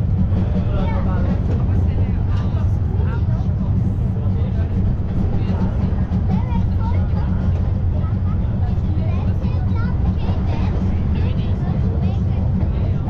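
Steady low rumble of a Brienz Rothorn Bahn rack-railway carriage in motion, with passengers' voices chatting over it.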